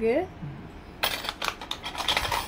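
Bangles and round plastic bangle boxes being handled: a run of quick clicks and light clatters begins about halfway through.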